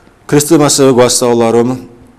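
A man speaking Georgian: one short spoken phrase starting about a third of a second in and ending shortly before the end.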